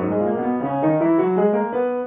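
Upright piano: a scale played with both hands together, stepping steadily upward at about four notes a second.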